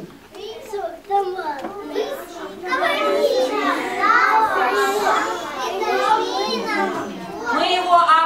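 Young children's voices chattering over one another, several at once, thin at first and filling out into a steady hubbub after about two and a half seconds.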